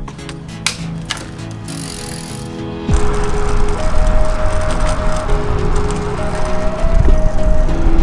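Background music with held synth-like notes; about three seconds in, a loud rush of wind and road noise from a moving bicycle comes in under it and stays.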